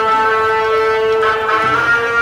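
Drum band music: wind instruments holding sustained notes over a steady low drone, the melody moving to new notes about a second and a quarter in.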